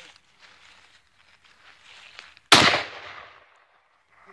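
A single rifle shot about two and a half seconds in, the loudest sound by far, its report echoing and fading away over about a second.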